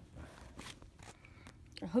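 Faint scratchy handling noise from a phone being gripped and repositioned, fingers brushing the microphone, then a man starts speaking near the end.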